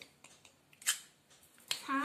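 Miniature steel lid set down on a tiny steel pot: one sharp metallic clink about halfway through and a smaller one near the end. A voice starts just at the end.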